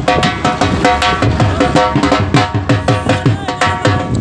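Drum-led folk music: fast, rhythmic hand-drum strokes, the deep ones dropping in pitch, under a held melody line.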